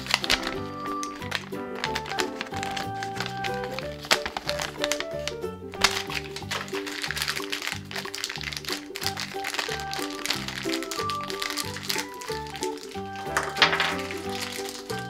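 Background music with a steady, repeating bass line, over the crinkling and rustling of plastic and foil toy wrappers being torn open and unwrapped by hand.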